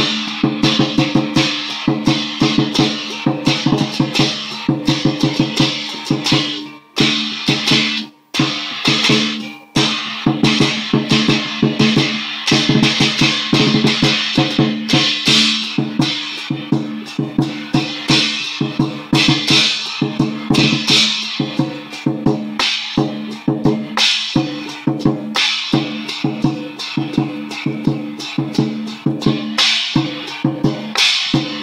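Lion dance percussion played live: a large Chinese drum beating a fast, steady rhythm with crashing cymbals over it. It breaks off in a few short gaps around seven to ten seconds in.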